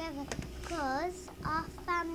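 A child's voice, not clear enough to be written down as words, with a pitch that swoops down and back up about a second in.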